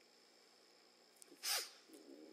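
Near silence, then about one and a half seconds in a single short, sharp breath picked up by the lectern microphone.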